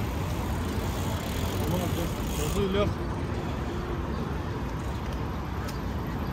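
Busy city street ambience: a steady traffic rumble, with brief snatches of passers-by talking about two to three seconds in.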